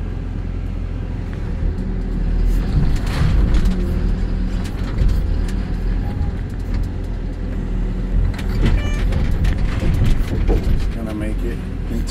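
Excavator diesel engine running steadily under hydraulic load, heard from inside the cab, with repeated clattering and crashing of splintered wood and debris as the bucket breaks into the demolished house.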